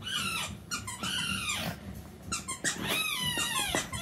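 A squeaky dog-toy ball squeaking repeatedly as it is squeezed, several short squeaks and then a longer one that falls in pitch.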